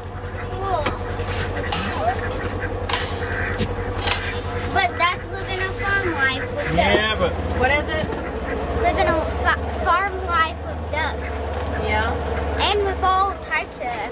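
Polaris Ranger side-by-side's engine running with a steady low drone that gets louder about seven seconds in. Short pitched calls or voices come and go over it.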